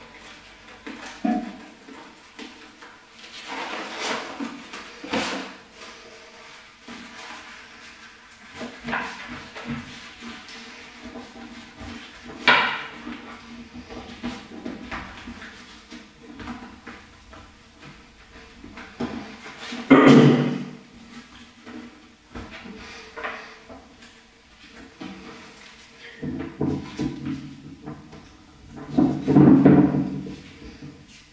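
Paper coffee filters being folded and creased by hand on a tabletop: irregular rustling and crinkling with scattered knocks. Louder handling noises come about 12 seconds in and about 20 seconds in. Near the end the folded paper is worked against a beer bottle cap to pry it off.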